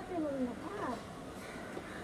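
Soft wordless voice sounds, a quiet murmur whose pitch glides downward and then briefly rises and falls again.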